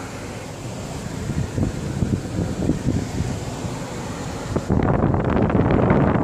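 Irregular rumbling and rustling handling noise on a handheld microphone, like wind on the mic, with no steady tone. About three-quarters of the way in it turns suddenly louder and coarser.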